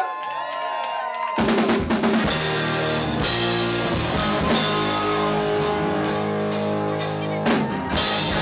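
Live rock band: a single held note sounds alone for about a second and a half, then drum kit, bass guitar and electric guitars come in together and play the song's instrumental intro.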